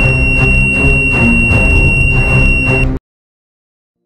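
A steady, high-pitched electronic buzzer tone: a 9-volt door-alarm buzzer set off by a switch on the door. It sounds over dramatic background music, and both cut off suddenly about three seconds in.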